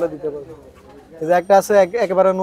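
A man speaking, with a brief lull in his voice during the first half.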